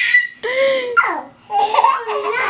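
Babies laughing, a few short high laughs with brief pauses between them.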